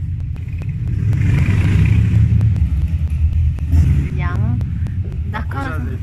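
A steady low rumble, with a swell of rushing noise about one to two seconds in and a voice briefly near the end.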